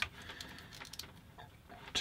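Faint clicks and handling noise from plastic test-lead clips being fitted onto a plug's metal prongs.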